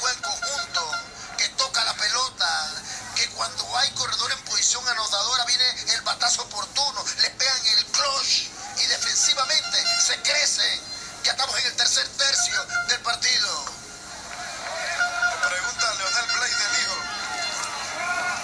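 Television broadcast sound played through a TV set's small speaker: commentators talking over background music.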